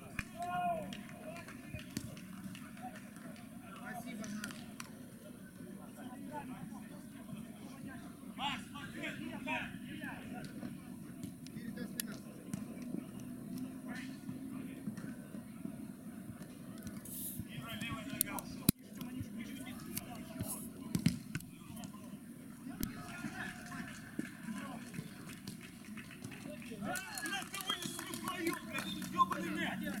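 Scattered calls and shouts of players and onlookers at an outdoor mini-football match, over a steady low hum. A single sharp knock comes about two-thirds of the way through.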